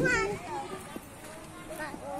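Children and adults chattering, with high children's voices calling out over one another, loudest at the start.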